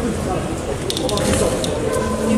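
Indistinct voices of people talking in a sports hall, with a few short sharp clicks about a second in and again near the end.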